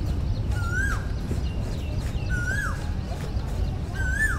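An animal call, a short whistled note that rises, holds and then drops in pitch, repeated about every second and three-quarters, over a steady low hum.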